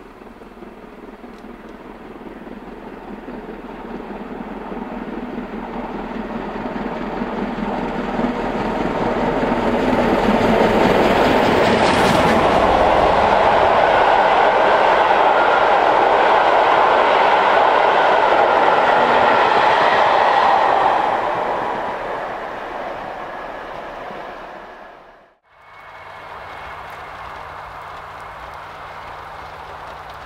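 LMS Stanier Class 5 'Black Five' 4-6-0 steam locomotive 45305 approaching with a train of coaches. It grows steadily louder, is loudest as the locomotive and coaches pass close by, then fades away. Near the end the sound cuts abruptly to a much quieter, steady background.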